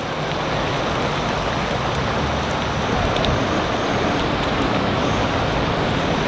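Crawdad boil bubbling hard in a pan on a portable gas camp-stove burner: a steady, even bubbling and rushing noise.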